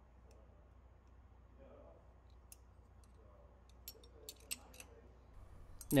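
Faint, light metallic clicks, a handful of them in the second half, as the thin steel valve ring of a Gardner Denver air compressor's discharge valve is set by hand onto the valve guard and guide ring. A low, steady hum runs underneath.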